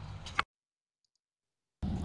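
Faint background noise, then a single sharp click, then dead silence for over a second before the background noise returns near the end.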